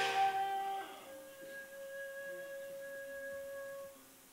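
Musical accompaniment: a chord dies away in the first second, then a single soft note is held for about three seconds and stops just before the end.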